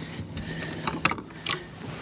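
Fishing rod and reel being handled, with a few irregular ratchet-like clicks, the loudest about a second in.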